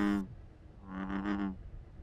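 One low, droning call of an American bullfrog, lasting under a second, about a second in.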